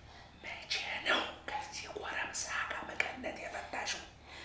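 A man whispering.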